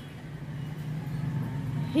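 Steady low background hum.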